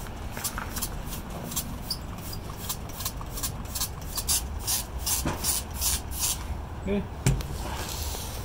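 Hand trigger spray bottle squirting water onto soil in quick repeated pumps, about three hisses a second, stopping about six seconds in. A single thump follows near the end.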